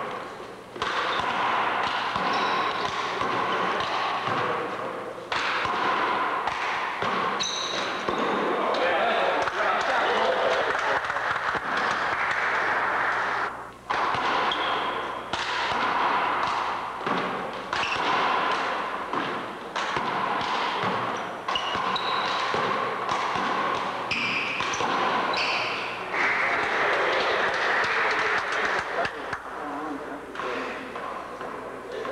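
Rubber handball being struck by hand and smacking off the wall and wooden gym floor in one-wall handball rallies, a run of sharp impacts that echo in the hall, with sneakers squeaking on the hardwood.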